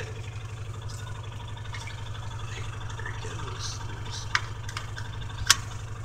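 Small engine of a ride-on vehicle running steadily at low speed, an even low hum, with two sharp clicks near the end, the second louder.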